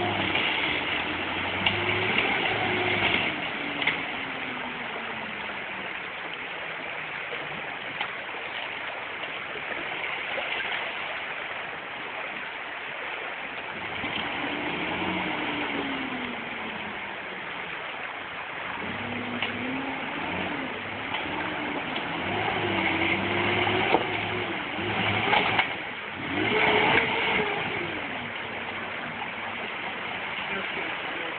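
An SUV's engine revving in several spells as it works through a shallow creek, the pitch climbing and falling with each push, most busily in the last third. Steady rushing creek water runs underneath, with a couple of sharp knocks during the late revving.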